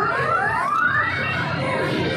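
Electronic sound effects from an arcade bonus-ball game machine: several quick rising tones in the first second, over arcade background music and chatter.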